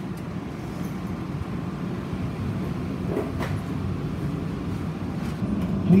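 Steady low hum inside an automated people mover car standing at a station with its doors open.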